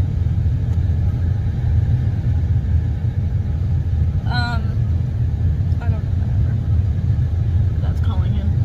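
Car heater blower and idling engine running steadily, heard inside the closed cabin of a parked car as a constant low rumble.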